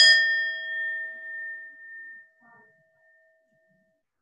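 A small handheld singing bowl struck once with a mallet, ringing with several clear tones: the higher ones die away within about a second while the lower ones ring on and fade over about four seconds.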